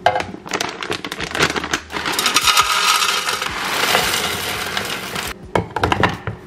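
Dry granules poured into a clear plastic canister: scattered clicks of pieces dropping in, then a dense rattling pour from about two seconds in that stops a little after five seconds, with a few more clicks near the end.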